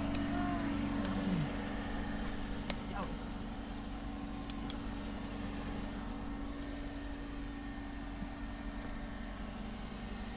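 A steady low mechanical hum with two held tones, with a faint voice in the first second or so and a few light clicks later on.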